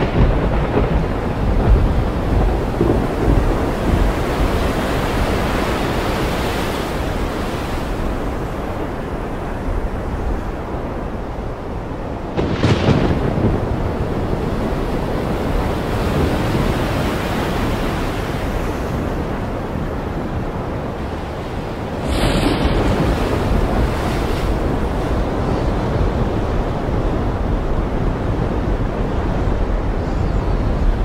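Strong wind buffeting the microphone over rough, breaking sea and spray in a squall: a loud, steady rushing with a deep rumble. A brief louder gust comes about twelve seconds in, and the noise steps up again a little after twenty seconds.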